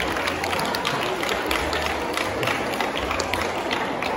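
Audience clapping: many irregular hand claps over a general noise.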